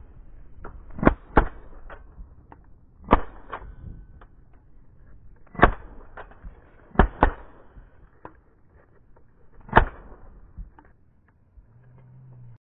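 Shotguns firing at cranes overhead from several guns: about eight shots spread over ten seconds, some in quick pairs.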